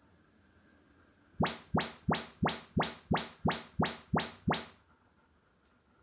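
Audyssey MultEQ XT32 room-calibration test signal from a Denon AVR-X3200W, played through a loudspeaker: ten quick rising sweeps, about three a second, starting about a second and a half in and stopping near five seconds. These are the measurement chirps the receiver uses to gauge each speaker's distance and level.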